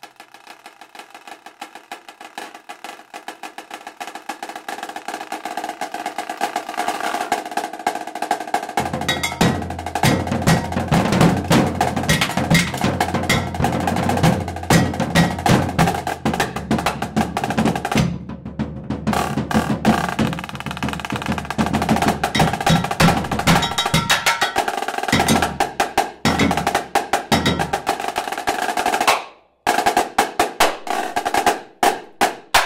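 Two percussionists playing marching snare drums, dense rapid strokes and rolls building steadily in loudness over the first several seconds. About nine seconds in a deep, steady low sound joins the drumming. The playing breaks off briefly around the middle and again just before the end.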